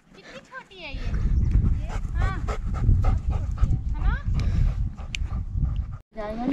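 A dog panting, over a steady low rumble, with a few short voiced sounds.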